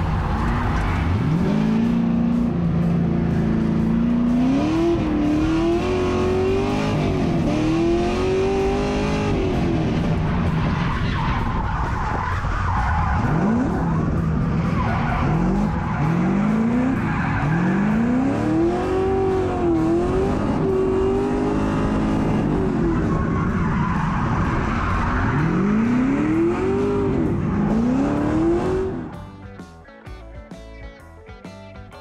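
Race car engine heard from inside the cabin, revving up in repeated rising runs with a drop in pitch at each gear change through a T-56 Magnum six-speed with a sequential shifter, while the tyres squeal. The sound falls away sharply near the end.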